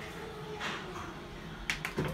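Motorised seat of a high-tech Japanese toilet lifting by itself after a button press on the wall control panel: a quiet mechanism sound with two quick sharp clicks near the end.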